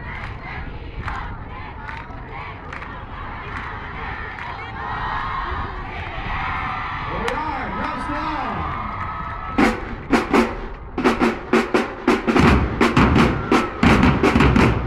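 Large crowd cheering and shouting. About ten seconds in, a marching drumline with bass drums comes in with a few strikes, then settles into a fast, steady beat.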